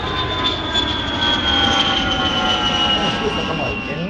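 Jet airplane flying overhead: a steady rush of engine noise with a high whine that slowly falls in pitch as it passes, cutting off suddenly at the end.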